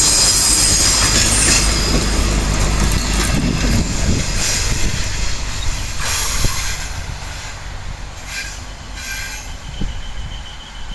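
Yellow DB track-measurement train rolling past close by, its coaches' wheels and bogies rumbling loudly over the rails. The noise then falls away, and in the quieter second half the train's wheels squeal briefly a couple of times on curved track.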